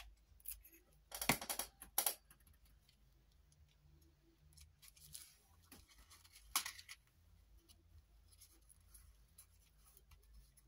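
Paper and card being handled on a craft mat: a short rustle about a second in, a sharp click at two seconds and another near seven seconds, with faint small taps between.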